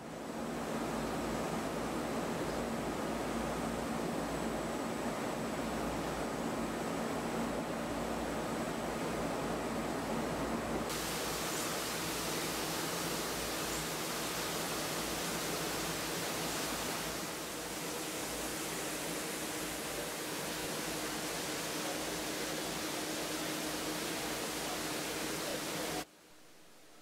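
Steady rushing of an indoor waterfall in a tropical greenhouse, with a faint steady hum under it; the hiss turns brighter about eleven seconds in and a little quieter about seventeen seconds in.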